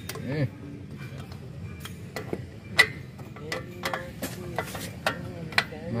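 Scattered small metallic clicks and clinks from drum-brake parts being handled and fitted on a car's rear brake backing plate, a few sharper ones spread irregularly, the loudest a little under three seconds in.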